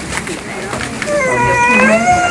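A small child crying: a long, high-pitched wail that starts about a second in and rises slightly as it goes on.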